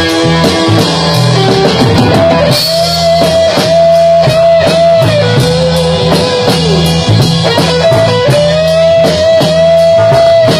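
Live rock band playing an instrumental passage: drums keeping a steady beat under bass and guitars. A lead line holds a long note twice, each time bending down in pitch at the end.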